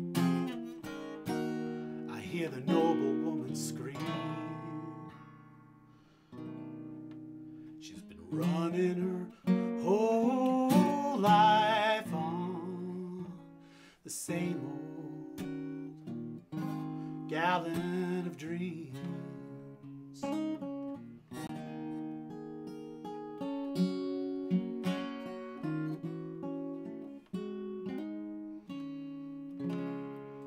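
Solo acoustic guitar playing an instrumental break: picked notes and chords, a chord left to ring and fade about six seconds in, then fuller passages with quick strummed chords.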